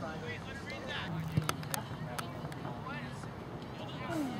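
Distant voices of soccer players and spectators calling out across the field, over steady outdoor background noise, with a few sharp clicks about a second and a half to two seconds in.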